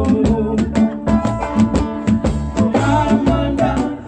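Live kaneka band music: singing with electric guitar and bass over a fast, even rattle-and-drum beat.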